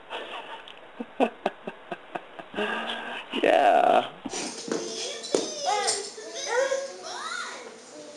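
A baby's voice in short squeals and babble, with a few sharp clicks in the first half. About halfway through, the sound cuts to another recording with a small child's high, gliding vocal sounds.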